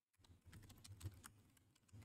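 Faint typing on a laptop keyboard: a handful of light key clicks, the loudest about a second in.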